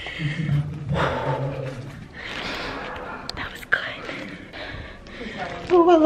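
A woman's breathy, whispered voice, with no clear words.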